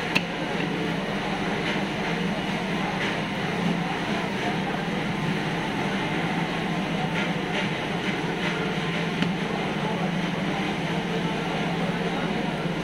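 Steady background din of a busy fish market, with a few sharp knocks of a cleaver chopping a big carp's head on a wooden block, the clearest just after the start.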